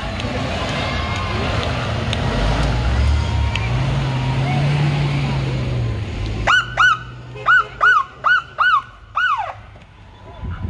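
A school bus drives past with engine and road noise, its engine note swelling and then easing off. About six and a half seconds in, a police car's siren gives seven short whoops in quick succession, the last one longer and sliding down in pitch.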